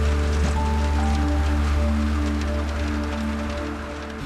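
Soft dramatic background music: slow, held notes changing gently over a deep, steady bass, easing down slightly near the end.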